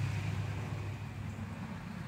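A steady low hum under a faint, even background hiss outdoors.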